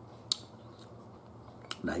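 A single sharp click about a third of a second in, then a fainter one near the end: chopsticks tapping against tableware during a meal. A low steady hum runs underneath.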